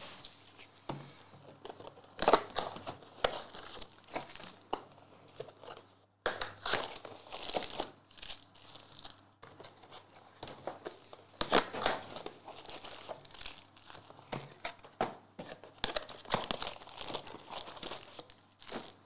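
Cardboard hobby boxes of 2022-23 Panini Revolution basketball cards being torn open, and the foil card packs inside crinkling as they are pulled out and stacked. The sound comes in irregular bursts of tearing and rustling.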